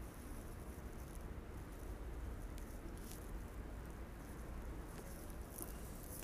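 Faint puffing and small mouth clicks of a man drawing on a tobacco pipe, over a steady low background rumble.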